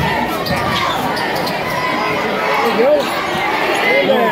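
Basketball being dribbled on a hardwood gym floor, with short thuds, over a crowd's steady chatter and occasional shouts.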